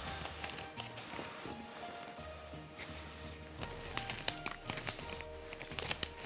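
Quiet background music with held notes, over faint light clicks and rustles of mini marshmallows being dropped by hand into a plastic bag.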